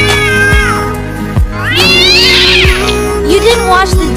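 Cat meowing over background music: one drawn-out meow ending just after the start, then a higher, rising-and-falling yowl about two seconds in, over a steady beat.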